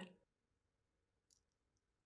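Near silence: room tone with two faint clicks in the second half.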